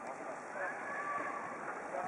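Ice hockey rink ambience: a steady hiss of skates on the ice under faint, drawn-out calls from voices in the arena.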